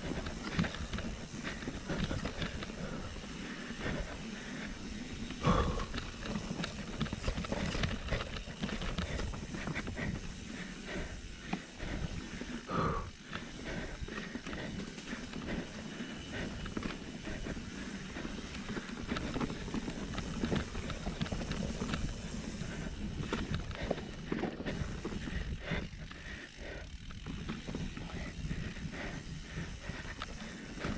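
Mountain bike riding fast down a muddy dirt singletrack, heard from a camera on the bike or rider: steady tyre rumble and the bike rattling over bumps, with wind buffeting the microphone. A couple of louder jolts stand out, about five and a half and thirteen seconds in.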